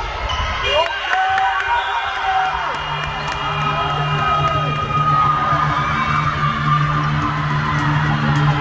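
Players and bench shouting and cheering in celebration at the end of a narrowly won women's basketball game. About two seconds in, music starts over the hall's speakers.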